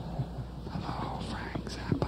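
Faint whispered voice over a steady hiss, with one sharp click near the end.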